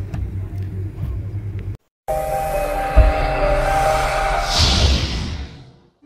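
A 2020 Shelby GT500's supercharged V8 idling with a low steady rumble, cut off suddenly about two seconds in. Then a logo sound effect: a held electronic tone, a sharp boom about a second later that is the loudest moment, and a rising whoosh near the end that fades out.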